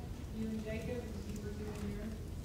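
Faint, indistinct speech: a voice talking quietly, too low for its words to come through.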